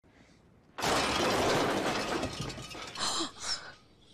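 A sudden loud crash from the film's soundtrack, around an old car, starting about a second in and running on for about two seconds, followed by two shorter noisy bursts near the end.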